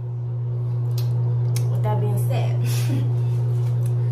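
A loud, steady low hum runs throughout, with faint muffled voice sounds about two seconds in.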